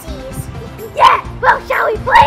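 Home-made song with a backing track: soft held notes, then a high voice sings several short, loud, sliding syllables from about a second in.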